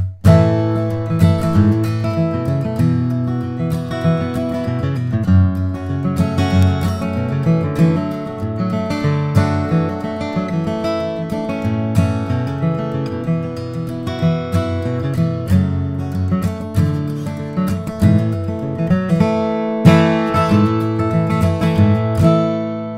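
John Arnold-built D-18 dreadnought acoustic guitar, capoed and played with a 1.2 mm tortoiseshell-style flatpick: a strummed and picked passage in the key of A, with chords ringing under frequent pick attacks.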